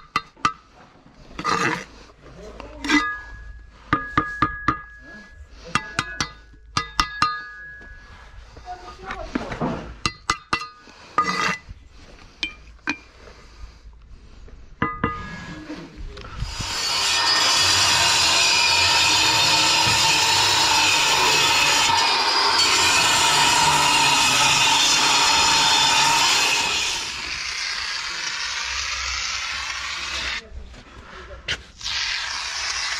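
Steel brick trowel clinking, tapping and scraping on hollow clay blocks and mortar while the blocks are laid, a run of short sharp ringing clinks. About halfway through, a loud steady hiss takes over for about ten seconds, then drops to a softer hiss near the end.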